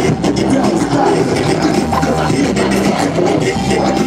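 Live DJ music played from vinyl on two turntables, with the record worked by hand: scratched and cut-up passages over a beat.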